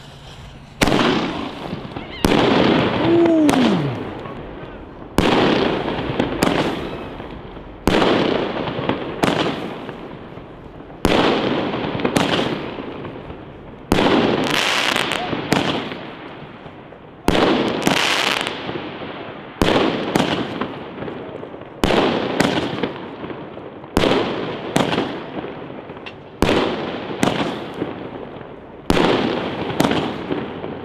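A consumer firework battery of 40–50 mm shells (Magnum Pyro Collection) firing its shells one after another. There is a sharp bang every second or two as each shell bursts, and each bang fades out over about a second. A short falling tone comes about three seconds in.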